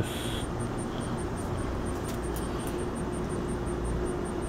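Steady low background rumble with a faint hum and a faint, regular high-pitched ticking of about six a second.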